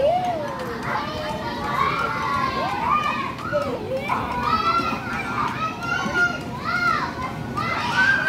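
A group of young children playing noisily together, many high voices shouting and calling over one another without a break.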